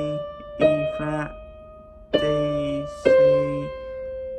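Electronic keyboard played slowly, one note at a time, picking out a melody. Three notes are struck about a second apart, and each is held and fades away.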